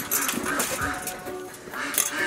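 Goats in a pen bleating a few short, faint calls.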